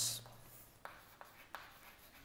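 Chalk writing on a chalkboard: a few short, faint scratches and taps as a word is written.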